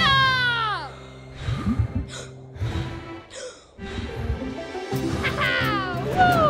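Cartoon soundtrack: background music with a falling pitched glide at the start. A few short breathy whooshes follow, and another falling glide comes near the end.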